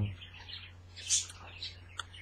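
Small pet birds chirping a few times, faint, over a steady low hum.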